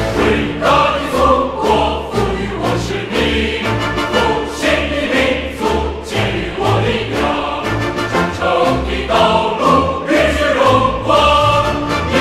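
Large mixed choir singing a Chinese patriotic song in Mandarin, with lyrics including '复兴的民族给予我力量', over an instrumental backing with a steady, pulsing bass.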